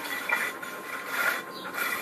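A ceramic floor tile scraping and grating along concrete and dirt as a dog pushes and drags it with its mouth, in several uneven scrapes.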